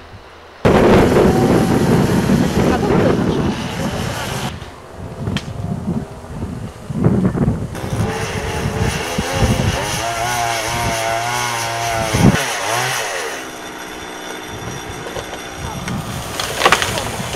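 Petrol chainsaw running at high revs and cutting wood in the treetop, its engine note wavering as the chain bites. About twelve seconds in it comes off the cut and the revs fall away to a steady idle.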